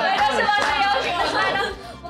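Several people talking over one another in lively chatter, dying down near the end.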